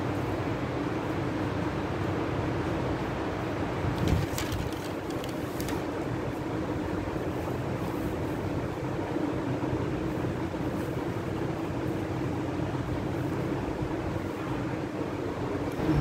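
Steady classroom room noise, a continuous hiss with a low hum. A soft knock comes just after four seconds, then a few faint scratches of a marker writing on a whiteboard.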